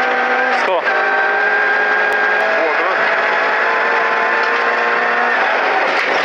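VAZ 2108 rally car's four-cylinder engine running at high, steady revs under full throttle, heard from inside the cabin. Its pitch dips briefly less than a second in, then holds level and eases slightly near the end.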